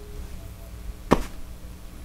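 Small plastic Lego pieces being fitted together by hand: one sharp snap a little past halfway, over a faint steady hum.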